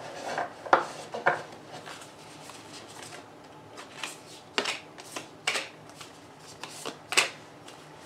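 A deck of oracle cards being shuffled by hand and cards laid down on a table: a string of short, sharp card snaps and taps at uneven intervals.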